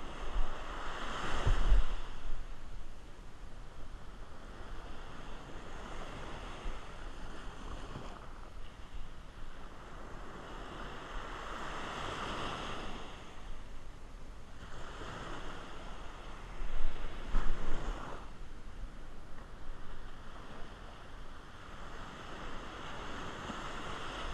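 Small shore-break waves breaking and washing up the sand, in swells every few seconds, with wind on the microphone. There are two louder rushes, one about a second and a half in and one about seventeen seconds in.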